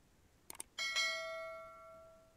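Subscribe-button animation sound effect: two quick clicks, then a notification bell chime struck twice in quick succession that rings and fades away.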